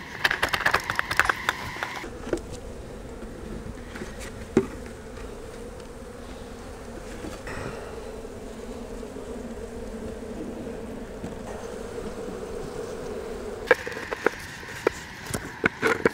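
Honey bees buzzing steadily around an opened hive. In the first two seconds a metal hive tool scrapes and clicks on the wooden bottom board, clearing propolis and burr comb. Near the end there are a few wooden knocks as hive boxes and the cover are set in place.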